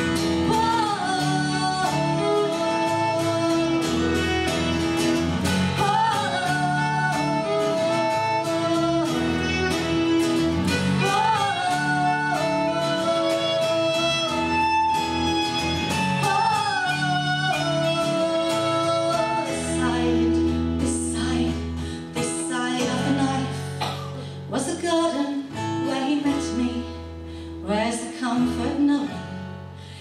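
Live folk band playing a song: a woman singing over strummed acoustic guitar, violin and bass guitar. About two-thirds of the way through, the band drops back to a quieter, sparser passage.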